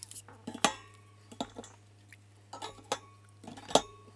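Plastic spray bottles being set down one after another into a wire metal basket: about six sharp knocks and clinks, the loudest about half a second in and just before the end.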